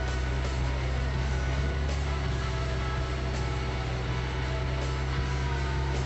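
Jeep Wrangler JL engine running steadily at low revs while crawling up a steep dirt bank, under background guitar music.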